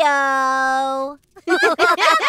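Cartoon voices holding one long 'ooh', rising then steady, which stops after about a second. From about a second and a half in comes a burst of giggling.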